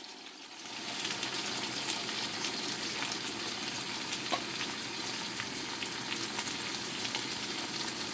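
Beef hot dogs and onions sizzling steadily in butter in a stainless steel pan while a can of pork and beans is emptied in on top.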